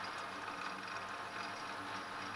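Metal lathe running steadily at a turned-down spindle speed, a low even hum, as a push-type knurling tool is fed by hand into the turning taper.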